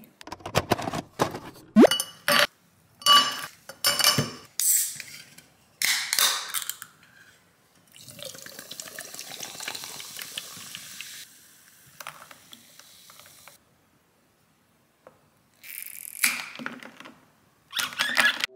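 A drink being made in a glass cup. A run of sharp clinks and knocks comes first. Soda is then poured from a can into the glass, fizzing steadily for about five seconds, and a straw clinks and knocks against the glass near the end.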